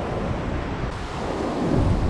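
Wind buffeting the microphone over the steady wash of surf breaking on a beach.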